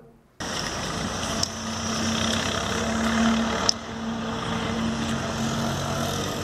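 An engine running steadily with a low hum, under outdoor background noise; it cuts in suddenly about half a second in, and two short clicks sound through it.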